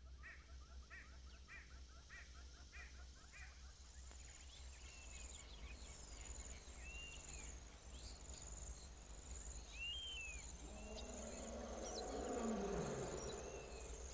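Faint animal sounds, insect-like trilling with repeated chirps and scattered whistled calls, over a steady low hum. Near the end a louder, lower sound falls in pitch.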